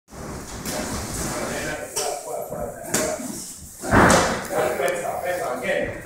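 Dull thuds of strikes landing on heavy punching bags, several of them about a second apart, the loudest about four seconds in, with voices in the room.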